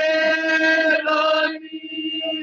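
Male voice chanting a noha, a Shia lament, in long held notes.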